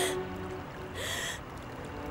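A sharp, tearful intake of breath about a second in, from a person crying, over soft, steady background music.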